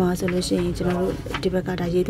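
Speech only: a voice talking in Burmese, in short, level-pitched syllables.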